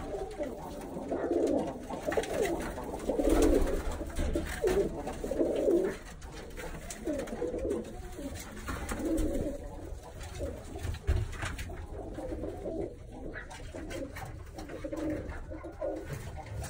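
Birmingham roller pigeons cooing, call after call, louder in the first six seconds or so.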